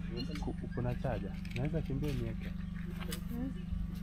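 People talking in the background in broken snatches, over a steady low hum.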